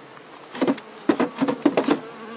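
Buckfast honeybees buzzing around the hive, with a quick run of knocks and clunks in the second half as the metal-covered hive roof is handled and seated on top.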